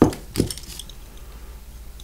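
Inert hand grenades being set down and picked up on a newspaper-covered table: a sharp knock right at the start and a second knock under half a second later, followed by a few faint clinks.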